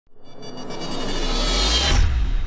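Logo intro sound effect: a synthetic whoosh that swells steadily louder, with a deep low rumble building beneath it, cutting off suddenly at the end.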